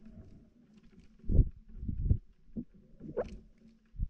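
NASA sonification of the Kepler star KIC 7671081 B, its brightness variations turned into sound: irregular low rumbling swells over a faint steady hum, with a louder pulse about a third of the way in and a short rising, higher sound near the end.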